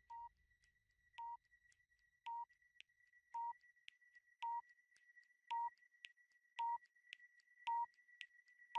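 Countdown timer sound effect: short electronic beeps about once a second, eight in all, each louder than the last. Faint ticks fall between the beeps, over a faint steady high tone.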